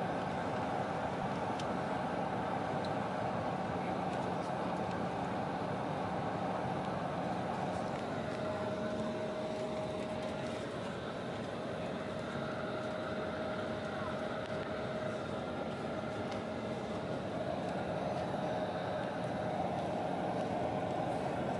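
Steady cabin noise of an Embraer 170 jet taxiing, heard from inside the passenger cabin: the engines' even rush with a few steady tones, one of them a higher tone that comes in about eight seconds in.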